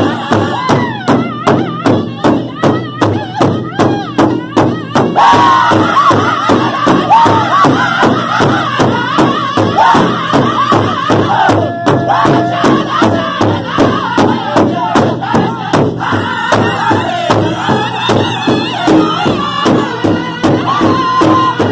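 Powwow drum group singing over a steady, even beat struck together on a large shared drum. The singing swells louder and higher about five seconds in.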